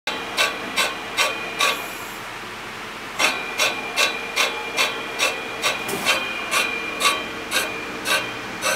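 A 10-inch table saw blade turning and ticking against a wooden stick held at its side, about two or three regular ticks a second, stopping briefly near two seconds in. The ticking is the blade's wobble striking the stick: the owner takes the new blade for not flat, or suspects the saw itself. A faint steady whine runs underneath.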